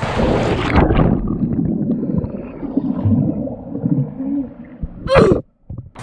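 A person jumping into a swimming pool with a loud splash, heard from a GoPro at the water's surface. The camera comes off the head strap and goes under, so the next few seconds are muffled, gurgling underwater sound, ending just after five seconds with a short, loud rush of splashing water.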